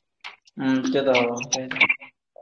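A man's voice: one drawn-out vocal sound lasting about a second, starting about half a second in, with a few faint clicks before it.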